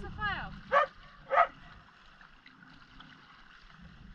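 A dog yelping, three short high yelps over a low rumble in the first second and a half. After that only faint background remains.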